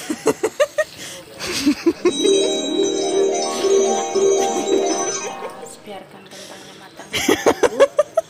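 A short bell-like chiming melody of stepped notes lasting about three and a half seconds, with brief voice-like sounds before it and near the end.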